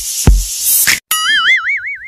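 Electronic beat with a kick drum that cuts off suddenly about a second in, followed by a cartoon 'boing' sound effect: a springy tone wobbling up and down in pitch.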